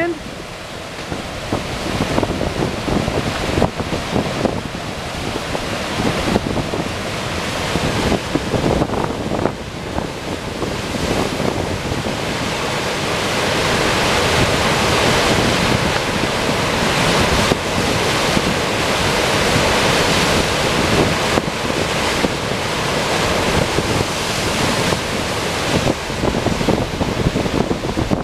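River floodwater pouring over a dam crest and churning in white water below it, a steady rushing that grows somewhat louder about a third of the way in. Strong wind buffets the microphone throughout.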